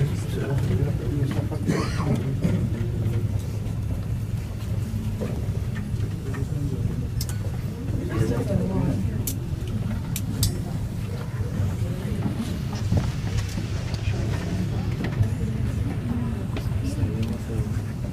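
Indistinct background voices of people talking, over a steady low hum, with a few short clicks around the middle.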